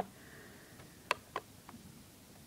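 Light handling clicks from the airsoft AK-47's magazine: two sharp clicks about a quarter second apart a little after the middle, and a fainter one near the end.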